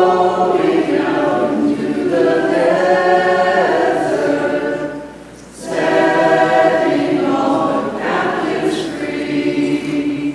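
Church choir singing a hymn in two long phrases, with a short break about five seconds in.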